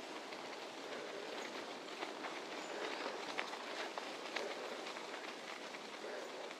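Bicycle tyres rolling steadily over a gravel path, with many small crunches and clicks from the grit under the wheels.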